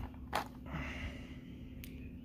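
Plastic blister pack of a crankbait handled in the hand: a short tap about a third of a second in and a faint click near the end, over a low steady hum.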